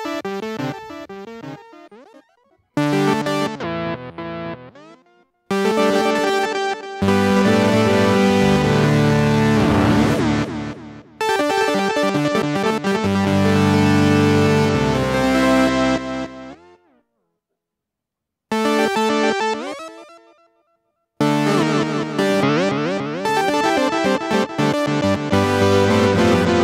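Korg minilogue analog synthesizer played on its keyboard in several phrases of chords and notes, run through a digital delay pedal. The playing stops and starts again a few times, and each phrase trails off before short silences.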